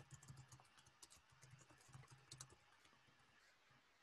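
Near silence with faint, irregular clicks of typing on a computer keyboard, stopping about two and a half seconds in.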